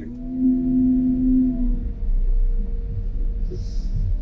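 Multihog CV 350 compact sweeper's engine and hydrostatic drive running as it pulls away, heard from inside the cab: a steady low rumble with a humming tone that fades after about two seconds.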